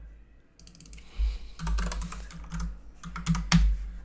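Typing on a computer keyboard: a quick run of keystrokes lasting about three seconds, with one louder key press near the end.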